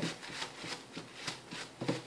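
Paper towel rubbed in quick repeated strokes over a wire soap cutter and its cutting block, a papery swishing scrub.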